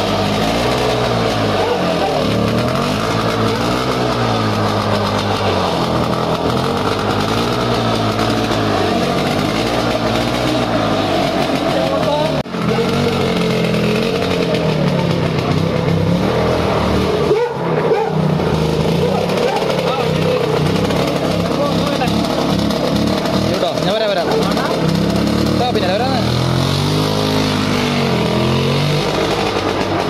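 Two-stroke single-cylinder engine of a Lambretta 150 scooter running, its pitch rising and falling over and over about every two seconds as it is revved, with short breaks about twelve and eighteen seconds in.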